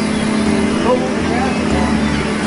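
Fishing boat's engine running steadily under a wash of wind and sea noise, with gulls giving short calls several times over the net.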